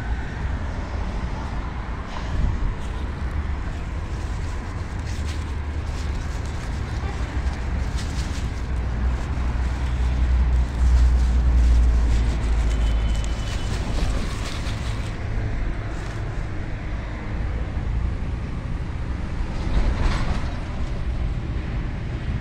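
Curly lettuce leaves rustling with light crackles as they are handled and picked, over a steady low rumble that grows loudest about ten seconds in.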